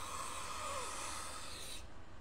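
A man breathing in slowly and deeply through his nose for about two seconds while holding warm ginseng tea in his closed mouth. The faint, steady hiss of the breath stops shortly before the end.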